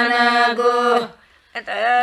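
A group of women singing a Lambada (Banjara) Holi folk song without instruments, holding long notes. The singing breaks off for a breath about a second in and comes back half a second later.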